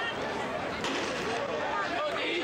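Crowd chatter: many voices talking at once in a steady babble.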